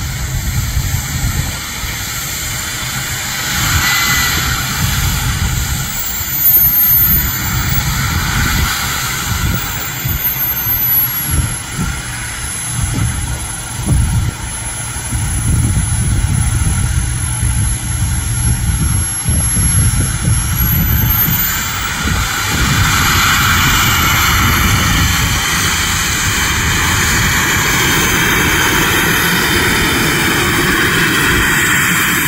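Radio-controlled scale model F-15 Eagle jet's engine running at taxi power, a high whine that rises and falls slowly in pitch. Underneath it is an uneven low rumble of wind on the microphone.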